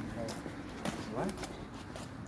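Quiet speech: a short "What?" about a second in and a few faint voice fragments, over a steady low outdoor rumble.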